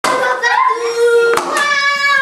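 Several children's voices calling out and chattering over one another, some notes held, with one sharp knock about one and a half seconds in.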